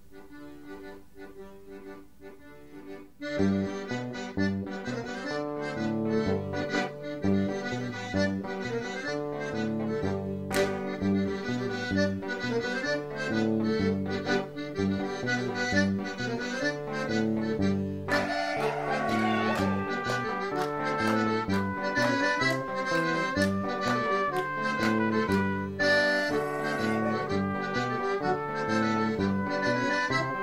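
Traditional folk dance tune led by a Hohner piano accordion. A quiet opening gives way, about three seconds in, to the full band with bass and a steady beat, and the melody rises brighter around the middle.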